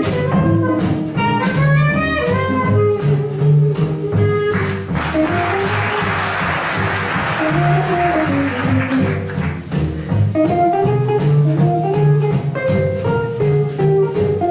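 Small jazz band of clarinet, guitar, double bass and drums playing live: a clarinet carries the melody over a steady beat. About five seconds in the clarinet stops and the audience applauds for several seconds while the rhythm section keeps going, and then the guitar takes the lead.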